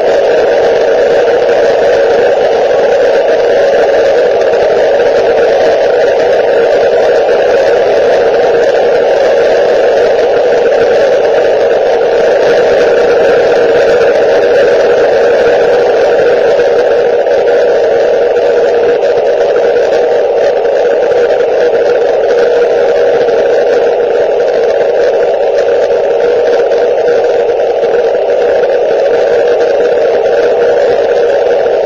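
Ham radio receiver putting out steady static hiss through its speaker, with no voice or signal coming through.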